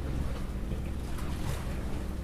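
A boat engine runs in a steady low hum, with wind noise on the microphone. A few light clicks sound about a second in.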